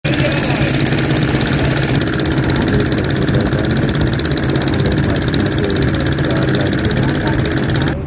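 Boat engine running steadily under way, a loud, even drone with a rapid regular pulse.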